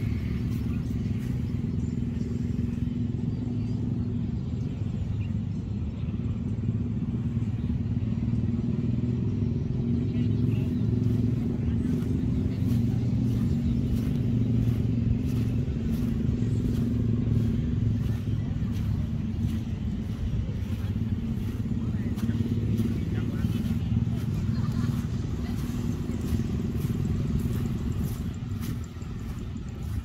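A small engine running steadily, a low hum that eases slightly near the end.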